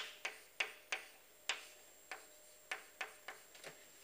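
Chalk writing on a blackboard: a series of short, sharp clicks and taps at irregular intervals as each stroke of a formula is made. They come thickest at first and thin out towards the end.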